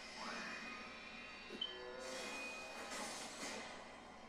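Background music and battle sound effects from an anime episode, playing quietly.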